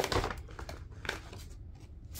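Paper and card rustling and crinkling as a paper photo-print envelope is handled, loudest right at the start, with smaller rustles about half a second and a second in.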